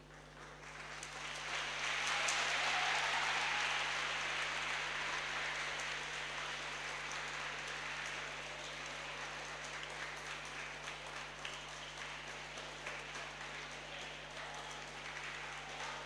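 Audience applauding. The clapping swells over the first couple of seconds, carries on steadily and cuts off suddenly at the end.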